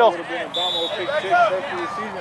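Indistinct talk and laughter from spectators, with a short, steady, high referee's whistle about half a second in, blown as the official signals the ball ready for play.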